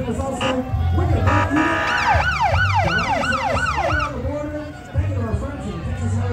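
A steady tone like a horn, then an emergency-vehicle siren in yelp mode, rising and falling about three times a second for about two seconds. Underneath are music with a heavy bass and voices.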